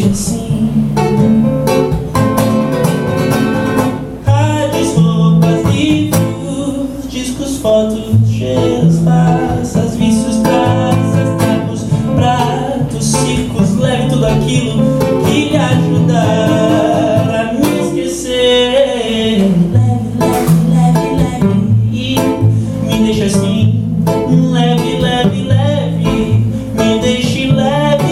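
Solo live song: a man singing a melodic line while accompanying himself on acoustic guitar, the guitar keeping a steady rhythm under the voice.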